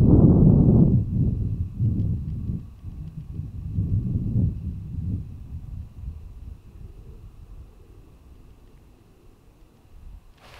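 Wind buffeting the microphone in gusts: low, noisy rumble, strongest in the first second and dying away over the following seconds, with a faint steady high whine behind it.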